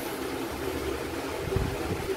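Steady background hum and hiss, with a soft low thump about one and a half seconds in.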